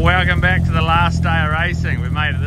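The engine of a K24-swapped Toyota coupe running with a steady low drone as the car pulls away. A person's voice is heard over it.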